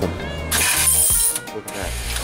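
Quarters from a coin change machine clattering into its steel pickup tray, a bright metallic jangle lasting about a second, over background music.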